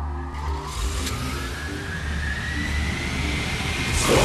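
Sound effect of a futuristic flying car: a steady hiss like a jet, with a thin whine that climbs slowly in pitch as it builds up.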